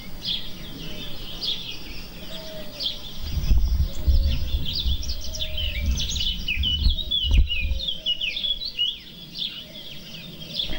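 Several songbirds chirping and trilling. A low rumble runs through the middle, with one sharp click near the end of it.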